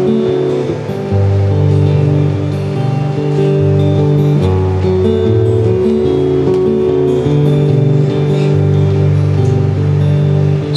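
Solo acoustic guitar playing an instrumental introduction: ringing picked notes over a low bass line that changes every second or so.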